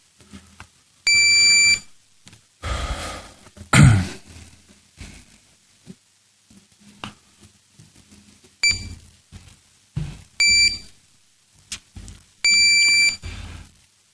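Electronic beep tones from an electronic voting system, sounding as a vote opens and closes: one beep of under a second about a second in, then three more in the last five seconds. Scattered thuds and rustles fall between them, the loudest a knock about four seconds in.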